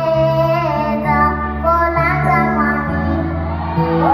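A girl singing the lead melody into a microphone over a men's vocal group holding sustained low harmony notes.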